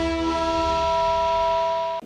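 Opening theme music of a TV special report, ending on a long held chord of steady tones. The bass drops out about a second in, and the chord then cuts off.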